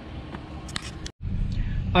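Steady outdoor background noise with a couple of brief clicks, then an abrupt cut to a low steady rumble inside a pickup truck's cab.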